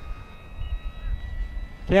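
Electric motor and propeller of a 1100 mm Blitz RC Works Supermarine Spitfire Mk24 model in flight, heard as a faint steady high whine over a low rumble of wind on the microphone.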